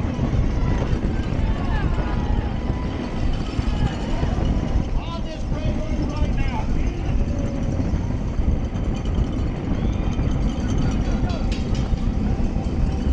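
Heavy wind rush on a bicycle-mounted camera's microphone at racing speed, with spectators along the barriers shouting and cheering, most about five to seven seconds in.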